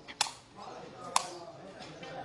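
Two sharp taps about a second apart from a plastic sepak takraw ball being struck, over faint chatter of onlookers.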